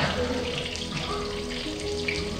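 Milky coffee heating in a steel saucepan on a gas burner, giving a steady seething, hissing noise as it comes to a simmer. Soft background music with held notes plays underneath.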